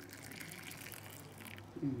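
Milky tea poured in a thick stream from a pan into a small steel tumbler: a steady splashing fill that fades out shortly before the end, as the tumbler fills to a froth.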